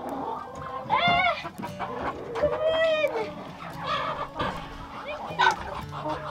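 Domestic chickens clucking and squawking in a coop, with two longer calls that rise and fall, one about a second in and one near the middle.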